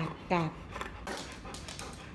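Labrador retriever giving two short whiny yelps that fall in pitch, in quick succession at the start, then panting: the dog is vocalising to demand a bone treat.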